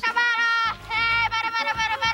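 Film soundtrack: two long, wavering high-pitched held notes, the first breaking off under a second in and the second running on through.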